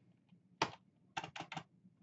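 Computer keyboard keystrokes typing a command: a single key about half a second in, then a quick run of four keys about a second in.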